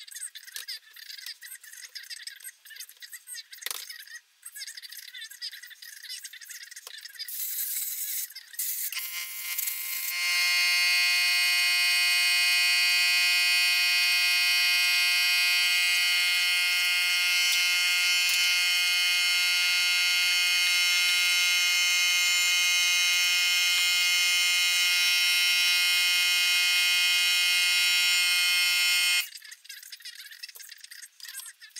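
Metal parts and tools rattling and clicking on a workbench. About nine seconds in, a loud, steady buzzing drone begins. It holds one unchanging pitch for about twenty seconds and cuts off suddenly near the end.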